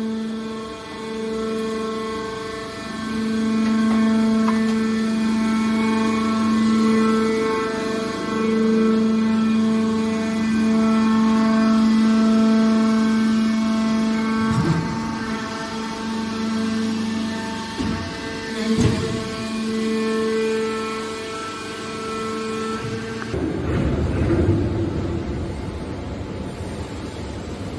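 Hydraulic power unit of a scrap metal baler running: electric motor and pump giving a steady hum with a whine at one fixed pitch. A few short knocks come in the second half. Near the end the hum stops and a rougher, noisier sound takes over.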